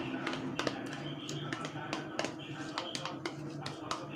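Spoon scraping and tapping yogurt out of a plastic cup into a glass: a string of small irregular clicks and taps.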